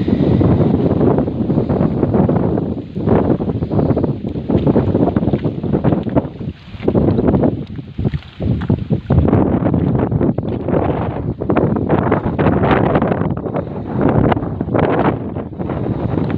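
Wind buffeting the microphone in strong gusts, easing briefly twice in the middle, with a few short knocks in the second half.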